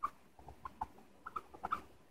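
Dry-erase marker squeaking on a whiteboard as words are written: faint, short squeaks in quick, irregular strokes.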